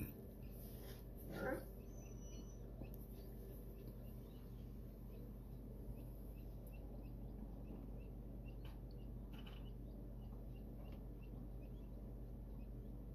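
Faint, repeated short peeps of newly hatched quail chicks in an incubator, over a steady low hum. A brief bump sounds about a second and a half in.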